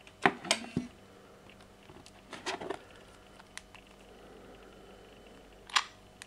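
Handling noise: phones being moved, set down and picked up on a wooden table, heard as a few short clicks and knocks. There is a cluster just after the start, another around two and a half seconds in, and a single sharp click near the end.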